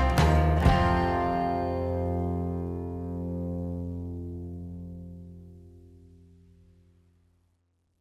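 Final chord of an acoustic country-folk song: two last guitar strums about half a second apart, then the chord rings out and slowly dies away over about seven seconds.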